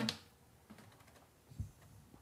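The last strummed acoustic guitar chord dies away in the first moment. Then come faint small clicks and a soft thump about a second and a half in.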